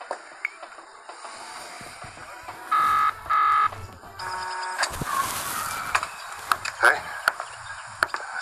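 A phone ringing with a double ring: two short electronic tones in quick succession about three seconds in. Quieter tones and a rushing noise follow.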